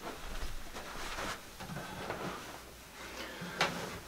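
Faint handling noises of a person sitting down and settling an acoustic guitar onto his lap: rustling and light knocks, a brief low tone in the middle and a sharper knock near the end.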